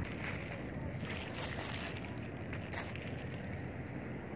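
Steady outdoor sea ambience: wind blowing across the microphone over open water.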